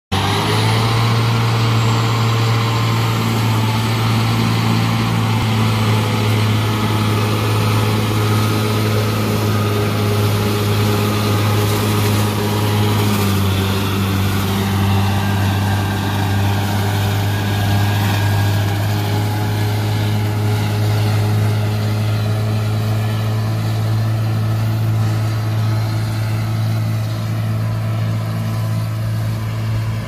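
John Deere 6930 tractor's six-cylinder diesel engine running steadily under load, driving a Kuhn FC3525DF front-mounted disc mower-conditioner that is cutting tall rye. The sound grows fainter near the end as the tractor pulls away.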